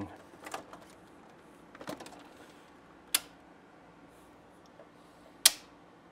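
A few sharp clicks and small knocks of hands handling wires and a circuit breaker inside a metal breaker panel. The loudest click comes about five and a half seconds in.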